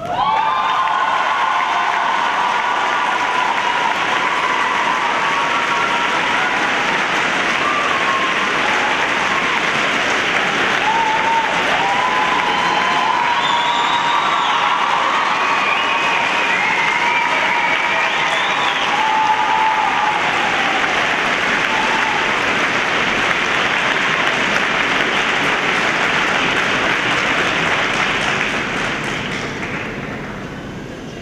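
Audience in an ice rink applauding for a finished figure skating program, with scattered cheers over the clapping. The applause starts suddenly as the program music stops and fades out near the end.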